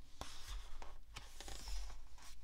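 Paperback picture book being opened and its cover turned by hand: soft paper rustling with several light ticks and brushes of fingers on the pages.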